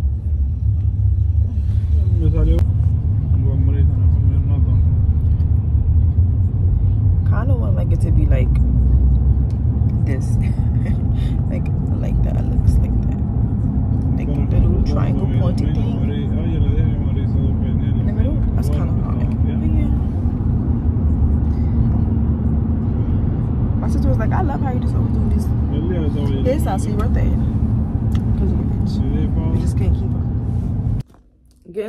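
Steady low rumble of car cabin noise heard from the back seat of a moving car, with a voice coming and going over it.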